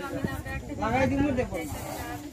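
Voices of a gathered crowd talking, with a short hissing noise near the end.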